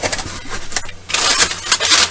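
Sheets of white tissue packing paper rustling and crinkling as they are handled and pulled out of a box. The sound is light at first, then loud and dense from about a second in.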